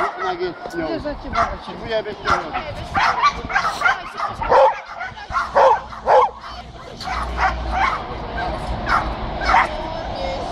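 A dog barking repeatedly in short, sharp barks at a helper holding a bite sleeve during protection training, with the loudest barks in the middle.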